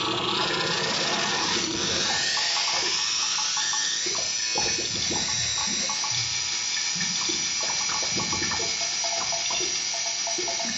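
Analog synthesizer playing a dense hiss of filtered noise that sounds like running water, its upper band sweeping slowly downward in the first few seconds, with short pitched blips scattered underneath.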